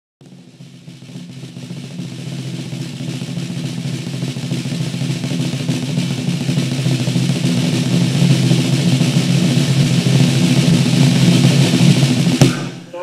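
Drum roll building steadily louder over a low sustained tone, as opening music.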